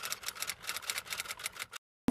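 Typewriter sound effect: a rapid run of key clicks that cuts off suddenly near the end.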